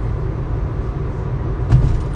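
Steady low rumble of a car heard from inside its cabin, with one short, sharper sound near the end.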